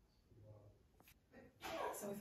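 A dog vocalising: a faint pitched sound about half a second in, then a louder one near the end.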